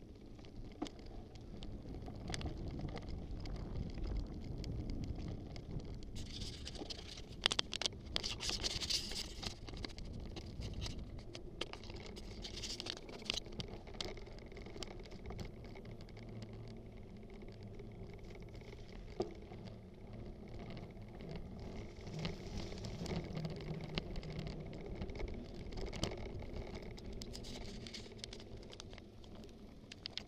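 Mountain bike rolling along a dirt trail: knobby tyres crunching and hissing over the packed dirt and leaves, with scattered clicks and rattles from the bike over bumps and a steady low rumble. A patch of louder, brighter crackling comes about seven to ten seconds in.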